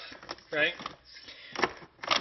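A man's voice saying a short word, then a couple of sharp clicks near the end as a drip coffee maker is handled.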